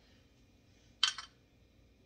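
A glass olive-oil bottle being poured into a small glass: a single short clink about a second in, otherwise faint room tone.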